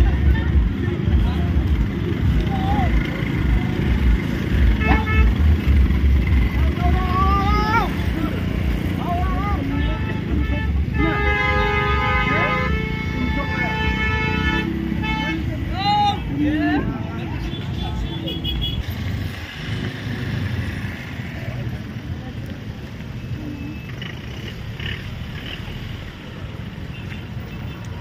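Traffic jam: car and motorcycle engines running in a stalled queue, with people's voices around. A vehicle horn sounds for about three seconds near the middle, and the rumble eases off in the last third.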